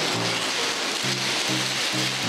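Newspaper strips being handled and crumpled, giving a dense, steady rustling. Background music with low held notes plays under it.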